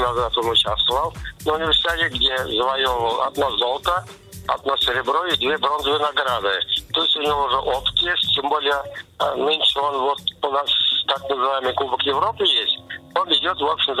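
A man speaking over a telephone line, his voice thin and cut off at the top, with background music underneath.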